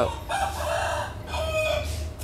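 A rooster crowing: a hoarse call in two parts lasting about a second and a half.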